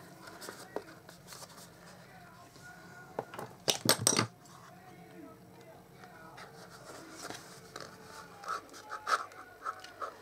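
Folded card stock being handled and adjusted by hand: light paper rustles and small taps, with a louder rustling scrape about four seconds in.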